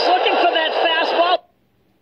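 A male radio play-by-play announcer talking, heard through a narrow broadcast bandwidth, until the recording cuts off abruptly about a second and a half in, leaving silence.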